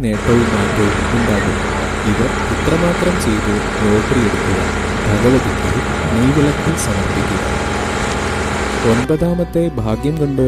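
Boat under way: a steady rushing of water along the hull over a low engine hum, with music and a voice faintly beneath. It begins abruptly and cuts off about nine seconds in.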